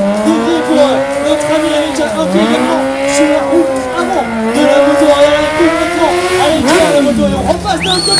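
Stunt motorcycle's engine revving up and down repeatedly as the rider works the throttle through stunts, the pitch dropping sharply about two, four and a half, and seven seconds in.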